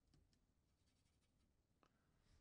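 Near silence: room tone with a few very faint ticks.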